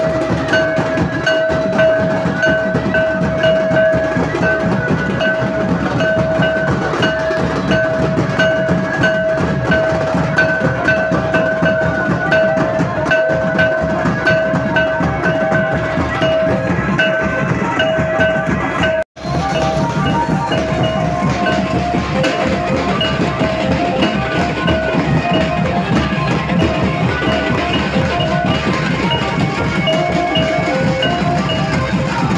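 Drum and percussion music beaten in a fast, dense, steady rhythm, with a high held note running over it. The sound cuts out for an instant about two-thirds of the way through.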